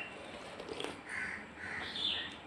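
Crows cawing, a run of short calls about half a second apart in the second half.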